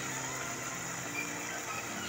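Potatoes and fenugreek leaves frying in oil in an aluminium pot: a steady sizzle and bubble as the oil separates, with a faint steady low hum underneath.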